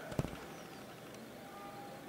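Faint steady room noise, with one short, soft knock just after the start.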